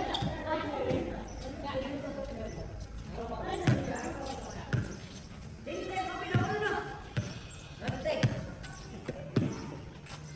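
A basketball bouncing on a paved outdoor court, several irregular bounces about a second apart, with players' voices calling out around it.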